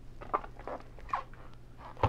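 Soft handling noises: a few short, light scrapes and knocks as plastic graded-card slabs are moved about on a table, over a low steady hum.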